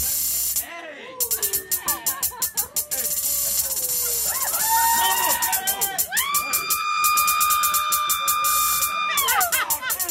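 Sparse live electronic music from a keyboard synthesizer over a fast ticking hi-hat loop: short sliding, pitch-bent notes, then one high note held for about three seconds that slides down near the end.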